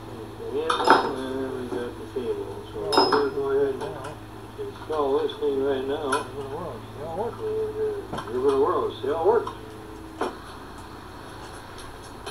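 Steel parts of a hand winch and its cable clinking and knocking as they are handled on a wooden trailer bed: several sharp clinks a couple of seconds apart, one ringing briefly.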